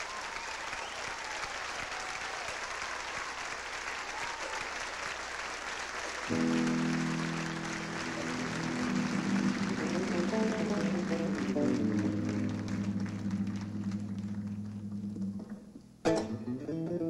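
Audience applauding. About six seconds in, a sustained electronic keyboard chord comes in over the applause and shifts through a few notes. A deeper held note joins near the end before the sound fades.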